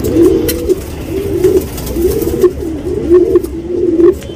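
Domestic pigeons cooing: a run of rolling, wavering coos, one straight after another.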